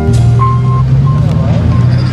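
Vehicle engines running at low speed, a steady rumble, with a short high beep repeating three or four times, mixed with voices and music.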